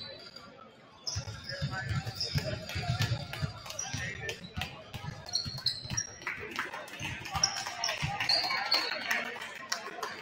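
Basketballs bouncing on a hardwood gym floor as players dribble and shoot in warm-ups: many irregular thuds, with short high squeaks scattered through and voices chattering in the gym behind.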